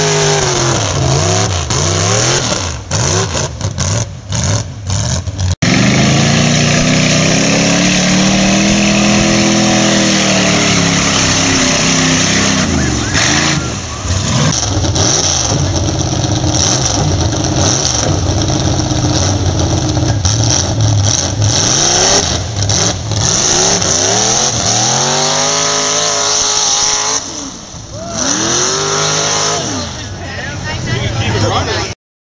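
Mud-bog trucks' engines at full throttle, revving in long rising and falling sweeps as they power through the mud pit.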